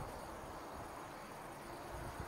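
Faint, steady high-pitched chirping of night insects, such as crickets, with a light low rumble underneath.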